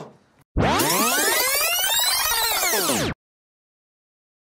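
Edited-in electronic transition sound effect: many overlapping tones sweep up and then back down together for about two and a half seconds, then cut off abruptly into silence.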